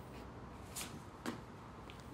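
Quiet room tone with three faint, brief clicks or knocks spread through it.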